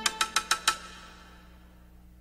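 A short musical jingle ending: four quick percussive notes in the first second, then the music dies away.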